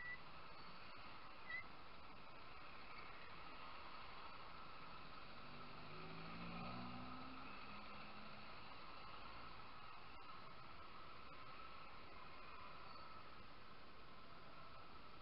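Faint, muffled riding noise from the motorcycle carrying the camera, steady throughout, with a short high chirp at the start and a low pitched sound sliding down about six to eight seconds in.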